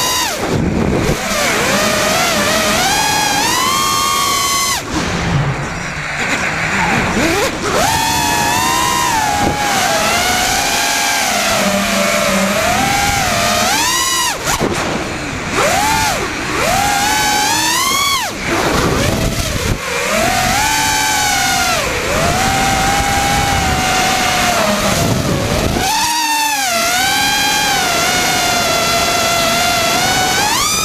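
FPV freestyle quadcopter's brushless motors, driven by FETtec Alpha ESCs, whining throughout, their pitch swooping up and down again and again with throttle punches and chops. There is wind noise on the onboard camera's microphone.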